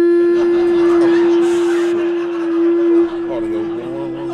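A man's voice holding one long, steady, nasal note through a stage microphone, a drawn-out vocal noise standing in for a stunned reaction in a stand-up bit.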